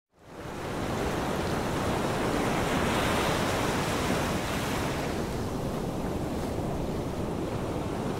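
Steady rushing of sea waves and surf that fades in over the first second and swells a little about three seconds in.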